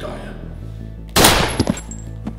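A loud handgun gunshot about a second in, followed closely by two sharper cracks as it dies away, with a brief thin high ringing after.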